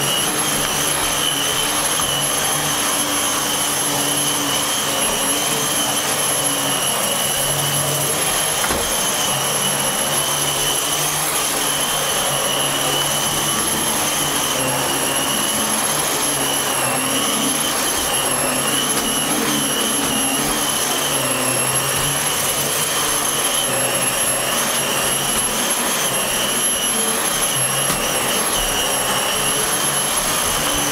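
Dyson DC15 ball upright vacuum cleaner running steadily: a high motor whine over rushing airflow, with a low hum that shifts slightly as it is moved about.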